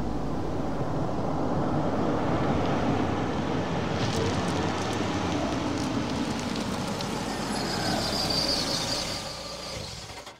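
A car rolling slowly in over a gravel drive and pulling up: steady engine and tyre noise, fading away near the end.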